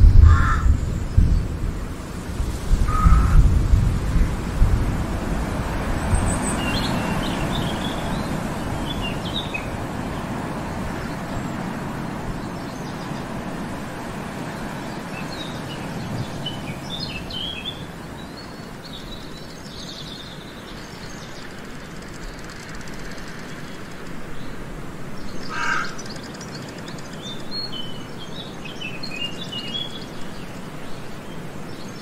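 Forest ambience: small birds chirping and twittering now and then, with three short lower bird calls, over a steady rushing noise that is loudest in the first few seconds.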